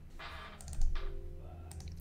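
Computer keyboard clicks, a short cluster about half a second in and another near the end, over faint music.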